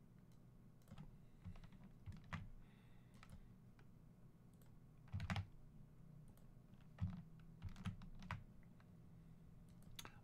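Faint computer keyboard keystrokes and clicks, scattered and irregular, with louder clusters about five seconds in and again around seven seconds, over a low steady hum.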